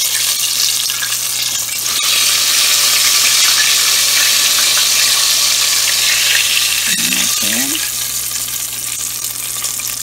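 Chicken wings deep-frying in hot oil in a stainless steel pot: a loud, steady sizzle, with a couple of clicks from a metal spoon against the pot as a wing is turned and lifted. A brief vocal hum about seven seconds in.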